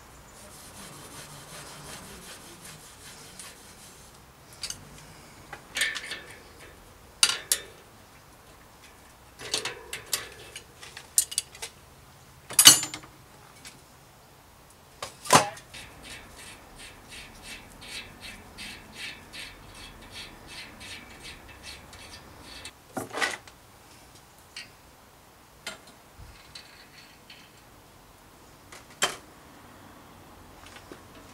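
A rag rubbing along a bicycle wheel rim, followed by scattered clicks and knocks as the wheel and hub are handled. In the middle there is a run of even light ticks, a few a second, while the hub axle is being worked.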